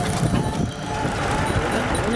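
Steady road and engine rumble heard from inside a moving vehicle, with faint voices in the background.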